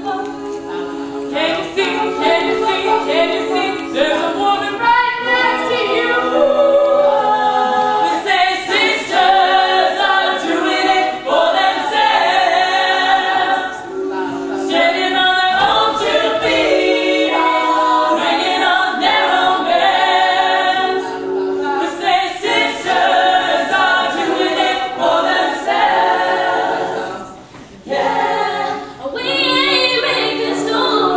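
All-female a cappella group singing in close vocal harmony without instruments, briefly dropping away near the end.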